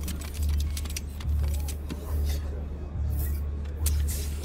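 Film sound effect of a small robot transforming out of a boombox: rapid metallic clicks, clanks and ratcheting, over a low throbbing pulse that swells about once a second.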